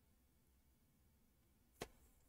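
Near silence: room tone, with one short click near the end.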